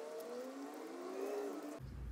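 Pen writing on lined notepaper, a faint light scratching. Behind it, faint tones slowly rise in pitch, like a distant vehicle or siren.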